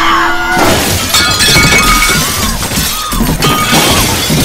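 Plates and glassware crashing and shattering, starting suddenly about half a second in and clattering on for several seconds, over background music.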